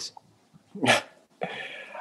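A dog barks once, briefly, about a second in, followed by a softer, longer sound.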